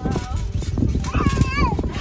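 Wind buffeting the microphone over the thuds of people bouncing on a trampoline mat. A high voice calls out in a short sliding cry about halfway through.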